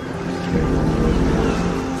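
Motorboat engine running steadily, a low, fast, even chugging.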